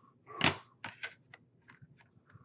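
Hard plastic graded-card slabs being handled on a desk: one sharp knock about half a second in, followed by several lighter clicks.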